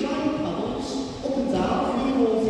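Sea lions calling on cue: long, drawn-out voiced calls that waver in pitch and overlap one another.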